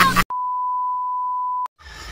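A steady, high, pure beep tone of about a second and a half that cuts in and out abruptly over silenced audio, an edited-in bleep of the kind used to censor a word.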